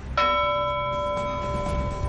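News bulletin transition sting: a single bell-like chime struck just after the start, ringing on with several clear tones over a low rumble and fading slowly.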